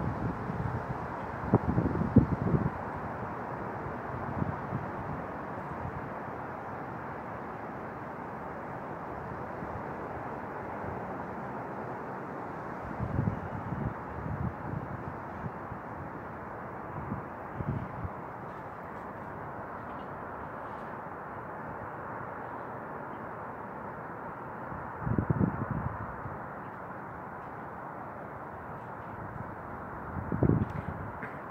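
Steady outdoor background noise, broken by several short gusts of wind buffeting the phone's microphone. The strongest gusts come about two seconds in and again a few seconds before the end.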